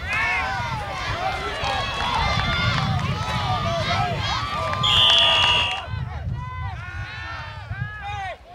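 Game sound from a football field: people shouting and calling out throughout. A referee's whistle blows once for about a second just past the middle, as the play ends in a pile-up.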